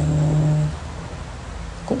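A man's voice holding a long, flat hesitation "uhh" for about a second, then a short pause before he speaks again near the end.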